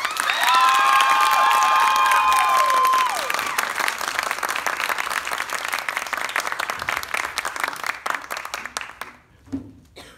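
Theater audience applauding at the end of a song, with drawn-out whooping cheers over the first three seconds. The applause then thins out and dies away near the end.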